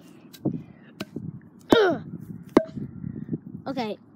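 A few sharp knocks, about a second apart, like hammer blows on something being driven into the ground. A brief voice cry comes in among them.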